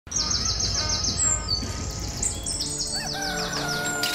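Birds chirping: a quick run of repeated high, falling chirps at first, then scattered higher chirps, over a low ambient rumble. Soft sustained music tones come in about halfway through.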